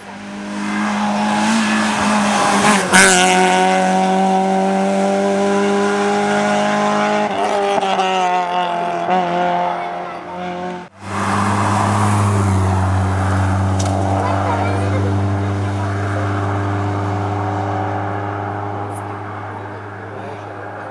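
Racing car engines running hard at high revs, heard in two takes joined by an abrupt cut about eleven seconds in. In the first there is a sharp loud crack about three seconds in; in the second a deeper engine note holds steady and slowly fades.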